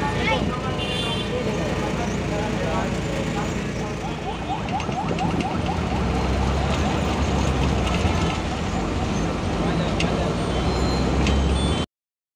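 Vehicle engine and road noise heard from inside the cab while driving, with voices in the first second or so; the low engine rumble grows heavier about halfway through as the vehicle gets under way on the open road. The sound cuts off abruptly just before the end.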